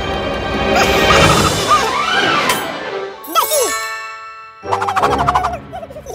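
Cartoon soundtrack: bright music with chime-like tinkles, overlaid by characters' wordless gliding vocal sounds. The music breaks off about two and a half seconds in, there is a brief near-silent pause, and a short loud burst of sound returns near the end.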